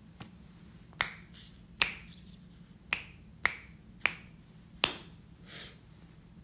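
A person snapping their fingers: six sharp snaps at uneven spacing, roughly one every 0.6 to 1 second.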